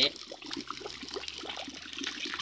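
Liquid heating over an open fire, sizzling and crackling with a steady patter of small pops.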